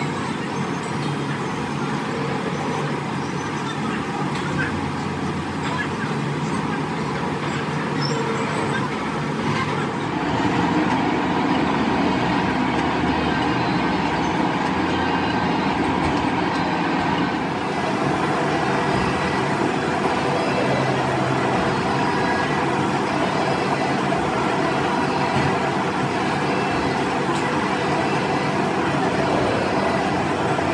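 Metal shaping machine running, its cutting tool working the tooth gaps of a large steel gear. The noise is steady and gets a little louder about ten seconds in.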